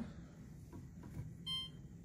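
Samsung Dual Cook oven's touch control panel giving one short electronic beep as a key is pressed, about one and a half seconds in, confirming the press.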